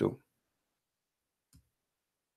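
The end of a man's spoken word, then near silence broken by a single faint click about one and a half seconds in.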